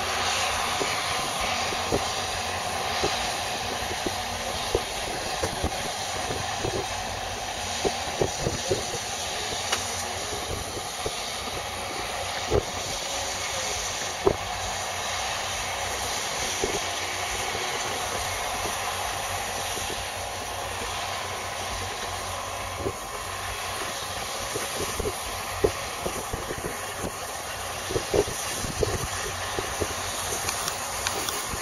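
John Deere 4430 tractor's six-cylinder turbo diesel and a Vermeer round baler running at a distance while baling alfalfa: a steady wash of engine and machine noise. Scattered sharp clicks come through it at irregular intervals.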